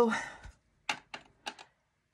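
A few short, sharp clicks, four of them spread over about a second, just after the end of a spoken word.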